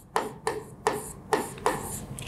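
Marker pen rubbing across a writing board as a word is written by hand: a quick run of short scratchy strokes, about three a second.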